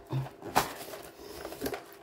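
Handling noise as a metal tin of coloured pencils is taken out of its white cardboard box: faint rustling and sliding with a few sharp knocks.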